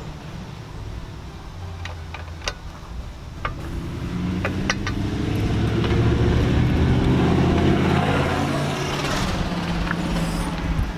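A car passing on the street, its engine and tyre noise swelling to a peak about eight seconds in, over a low rumble of wind on the microphone. A few light clicks come in the first five seconds.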